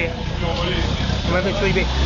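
Renault 8 Gordini's rear-mounted four-cylinder engine idling, with people talking over it. About a second and a half in, the engine note grows louder.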